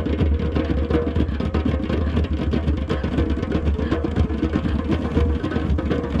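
Hand drums of a beach drum circle playing together in a dense, steady rhythm.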